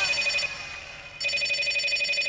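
Mobile phone ringing with an electronic ringtone: one ring stops about half a second in, and the next starts just after a second.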